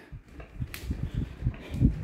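Bungee mini trampoline being bounced on: a series of dull low thumps from the mat and frame, with one sharp click about three quarters of a second in and the loudest thump near the end. The bounce is super tight, with little give.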